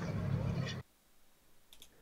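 Steady drone of a Yakovlev Yak-52's nine-cylinder radial engine in flight, cut off abruptly under a second in, leaving near silence with a couple of faint clicks near the end.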